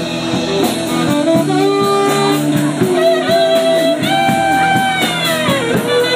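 Live rock and roll band playing: a saxophone holds and bends long notes over strummed acoustic guitar and a drum kit keeping a steady beat on the cymbals.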